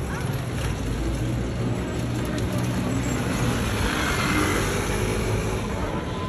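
Road vehicle passing through a city square: a steady low engine hum, then a swelling and fading pass that peaks about four seconds in.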